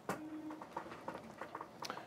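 Quiet room sound with a short faint tone just after the start and a couple of soft clicks, one near the start and one near the end.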